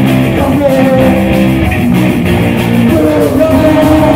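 Live rock band playing loud and steady: electric guitars and drums, with a singer's vocal over them.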